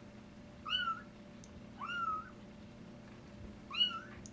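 Young kittens mewing: three short, high-pitched mews, each rising in pitch, a second or more apart.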